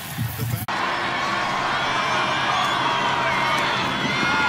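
Football stadium crowd: a steady din of many voices with some cheering, cutting in abruptly about half a second in.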